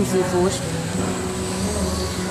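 A man speaks briefly in the first half-second over a steady low mechanical hum, and fainter voices follow.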